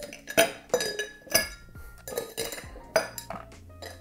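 Ice cubes set with metal bar tongs into tall frosted highball glasses: a run of about eight or nine clinks and knocks of ice and tongs against glass, some leaving a brief clear ring.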